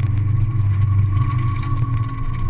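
Honda S2000's inline-four engine running under throttle during an autocross run, heard loud from the open cockpit, its note holding fairly steady in pitch.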